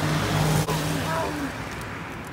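A vehicle engine running with a steady low hum over street noise, with one sharp click a little past half a second in.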